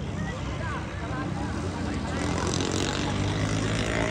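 An engine running steadily under people's voices, growing louder in the second half.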